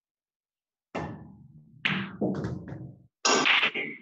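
Pool break shot. The cue ball cracks into the rack about a second in, and the balls knock against each other and the cushions over the next couple of seconds, with a louder clattering burst near the end. It is a dry break: no ball is pocketed.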